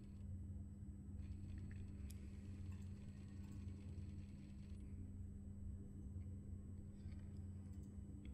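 Faint, steady low hum of a sewing machine's motor while piping is stitched slowly onto fabric.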